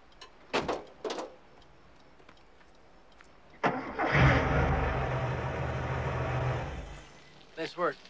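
A car engine is cranked and started: it catches with a quick rev about four seconds in and runs steadily for a couple of seconds, then fades down.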